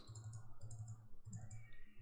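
Faint clicking of a computer mouse and keyboard in three short groups, as three crosses are entered in a puzzle grid, over a low steady hum.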